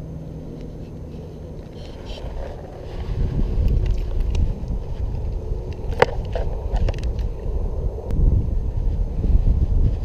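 Low rumbling noise on a GoPro's microphone as the camera is handled and moved in the wind. It grows much louder about three seconds in, with one sharp click about six seconds in.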